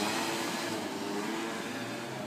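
Street traffic: a motor vehicle's engine and tyres running steadily past on the road.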